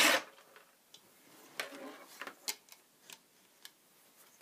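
A short laugh, then scattered sharp little clicks and ticks as a small hobby wrench and plastic and metal parts of a TLR 22 RC buggy's front end are handled while a nut is tightened.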